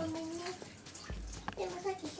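A woman's drawn-out "hai" trailing off about half a second in, then a soft low thump and a sharp click, with more voice-like sounds starting just after the click.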